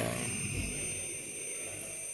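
A steady high-pitched electronic whine in a gap between words, over faint hiss.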